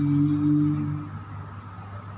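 A boy's Quran recitation (tilawah): one long held note that ends about a second in, leaving a steady low room hum.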